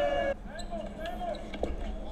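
A drawn-out spoken vowel trailing off in the first moment, then faint voices and a single short knock about a second and a half in.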